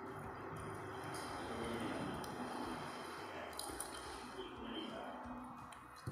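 A few light clinks of a metal spoon against a dinner plate, over a steady low background murmur.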